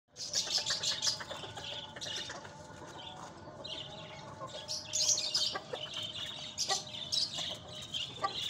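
Birds chirping in repeated short bursts, loudest near the start and about five seconds in, with a hen clucking.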